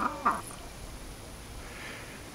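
Two short bird calls in quick succession at the very start, each falling in pitch.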